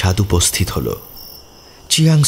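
Crickets chirping steadily in the background under a narrator's voice, which stops about a second in, leaving the chirping on its own.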